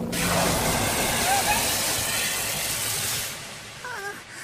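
Anime sound effect of a sudden rushing blast, a loud hiss that holds for about three seconds and then fades, with a short vocal cry near the end.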